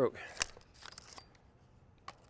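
A single sharp click about half a second in as the broken camera tripod is handled, followed by a second of faint scraping and rustling of its parts.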